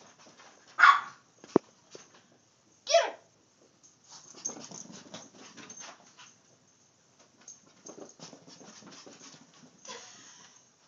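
A dog barks twice, short and loud, about a second in and again about three seconds in, with a sharp click just after the first bark. Softer, scattered scuffling follows.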